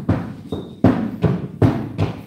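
A run of sharp thumps in a loose beat, four in quick succession.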